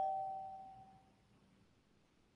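A single electronic chime, two close tones ringing out and fading away over about a second, like a computer or phone notification sound.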